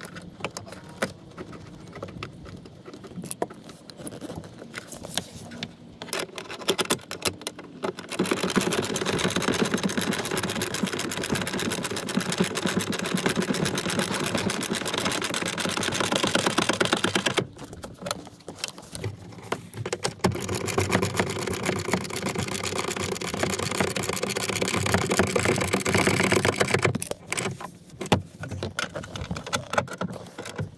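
Hand ratchet turning a 14 mm socket on a seatbelt mounting bolt, giving two long runs of rapid, even clicking: one of about nine seconds, then after a short pause another of about six. Before the first run there are quieter handling noises and the clip being pushed on.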